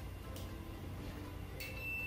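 Digital multimeter's continuity buzzer giving a steady high beep, starting about a second and a half in, as its probes bridge the plug-top fuse: the fuse has continuity and is intact.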